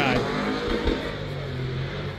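Drift cars' engines running on the track, heard as a steady engine drone.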